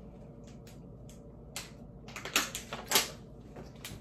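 Crinkling and rustling of snack packaging, plastic candy wrappers and box contents being handled, in a series of short crisp crackles, the busiest stretch in the second half.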